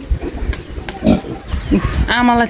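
Pigs in a pen grunting, with a couple of short low grunts about a second in and again near the end.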